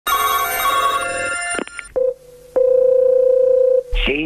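A telephone ringing for about a second and a half, then a few clicks, a short beep and a longer steady telephone line tone of the same pitch, as a call is placed.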